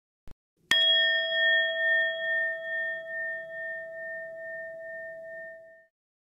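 A metal bell struck once, ringing out with a clear tone that wavers in slow pulses as it fades away over about five seconds. A faint click comes just before the strike.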